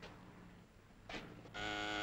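Electric doorbell buzzer pressed about one and a half seconds in, giving a steady buzzing tone that is still sounding at the end.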